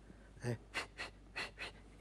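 A man's mouth imitating a small rubber blower bulb used to clean a watch movement: about four short, breathy puffs of air.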